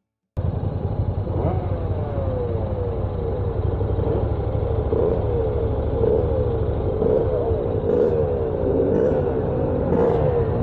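Honda NC750X's parallel-twin engine running at low road speed, its pitch dipping and rising again and again, over a low rumble of wind on the microphone. The sound cuts in suddenly just under half a second in.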